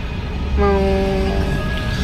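A voice holds one long, steady sung note on the word "mau" for about a second, starting about half a second in, over a low rumble.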